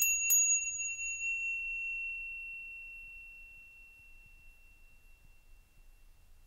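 A small high-pitched bell struck in a quick run of rings, the last strokes right at the start, then its single clear tone ringing on and fading away over about five seconds.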